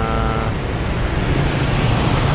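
Road traffic of cars and motorbikes passing on a busy city street: a steady rumble of engines and tyres.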